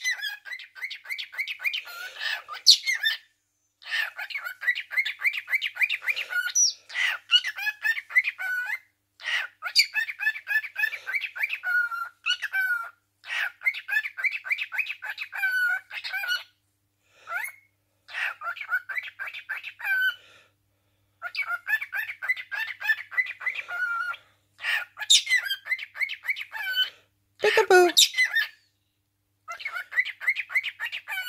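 Cockatiel chattering in long runs of quick, high chirps and warbles, broken by short pauses. Near the end a louder sound slides down in pitch.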